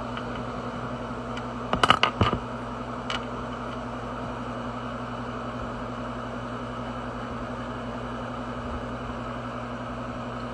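Steady low hum and hiss of room noise, with a short cluster of clicks and taps about two seconds in and one more click a second later, as pens are handled on a wooden desk.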